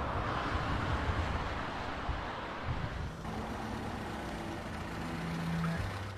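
Steady road traffic noise from a busy multi-lane highway with trucks and cars. A low engine drone from a heavy vehicle comes in about halfway through.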